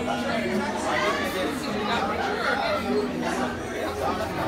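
Several people talking at once, indistinct chatter with no clear words, over a steady low hum.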